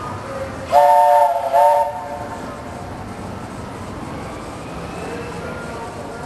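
Steam locomotive's chime whistle, several tones sounding together, blown about a second in as a longer blast followed quickly by a short one.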